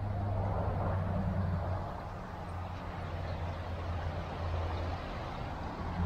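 Steady outdoor rumble with a low hum and a hiss above it, easing slightly about two seconds in.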